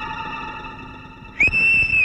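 Film background score: a held musical chord fades out, then about one and a half seconds in a sudden, loud, steady high whistle-like tone cuts in.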